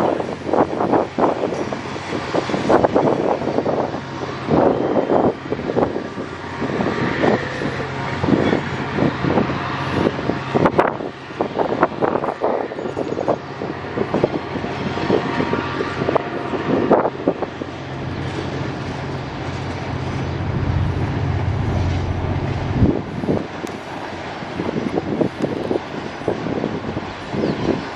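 Container freight train rolling past, its wagons' wheels knocking irregularly on the rails over a steady low hum that swells near the end, with wind on the microphone.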